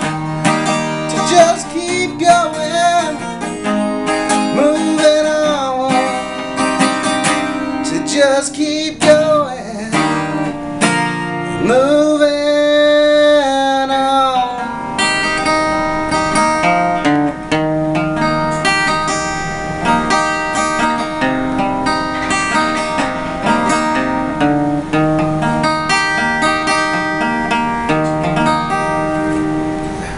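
Acoustic guitar strummed with a man singing over it, holding one long note about twelve seconds in; after that the voice drops out and the guitar plays on alone.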